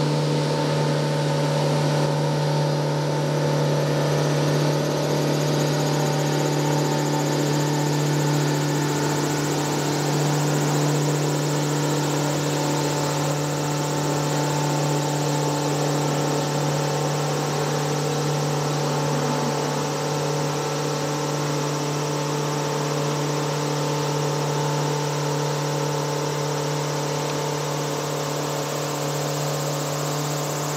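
Engine of a river sightseeing boat running at a steady cruise: a constant low drone that hardly changes in pitch, easing off slightly towards the end as the boat moves on.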